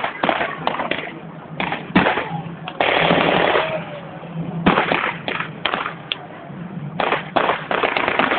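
Blank gunfire from rifles and machine guns, irregular single shots and short bursts, with a longer rushing blast about three seconds in.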